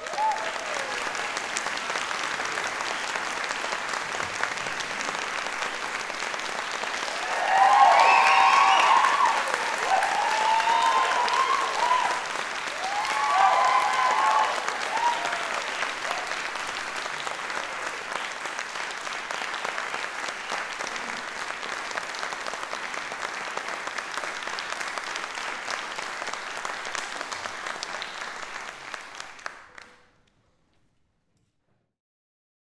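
Audience applauding steadily, with voices cheering over the clapping from about eight to fifteen seconds in, where it is loudest.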